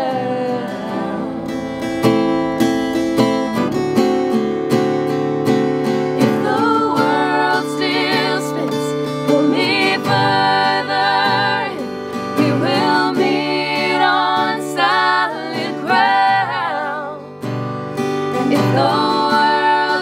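An acoustic guitar strummed steadily with three women's voices singing in close harmony. The voices drop away for a few seconds near the start, leaving the guitar alone, and come back in about six seconds in.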